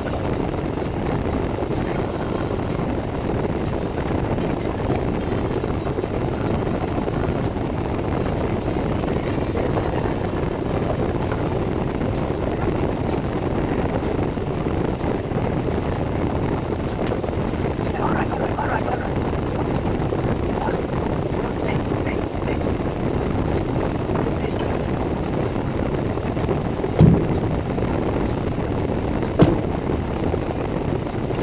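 Steady low rumble inside a stopped car with its engine idling. Two short, loud knocks come near the end, a couple of seconds apart.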